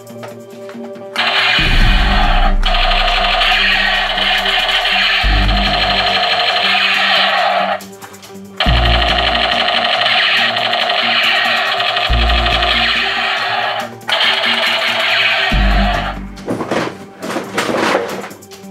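Battery-powered camouflage toy machine gun playing its electronic rapid-fire sound through a small speaker, in three long bursts with short breaks between them, over background music with a steady beat.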